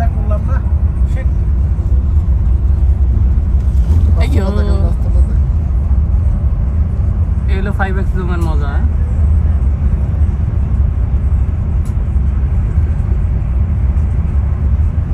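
Steady low rumble of a coach bus cruising at highway speed, heard from inside the cabin.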